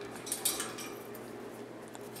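A few light metallic clinks about half a second in: an African grey parrot's beak knocking on its metal cage bars.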